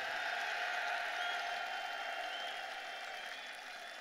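Crowd applause, an even wash of clapping that slowly dies down.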